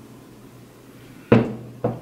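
A single sharp knock against the table about a second and a quarter in, dying away over about half a second, with a lighter tap just after.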